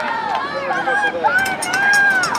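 Spectators yelling and calling out, several raised voices overlapping, with a few short sharp clicks in the second half.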